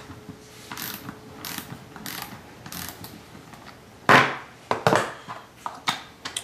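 Socket ratchet wrench clicking in short back-and-forth strokes, about one every two-thirds of a second, while loosening the dumbbell's end bolts. A few louder metallic knocks follow from about four seconds in.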